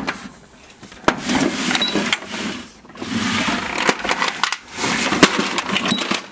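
Metal sockets and tools clattering and sliding in a steel tool chest drawer, in three stretches of rattling with sharp clicks.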